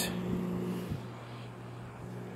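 Sminiker mini rechargeable USB desk fan with twin plastic blades running at full speed: a steady low hum with a soft airy whir.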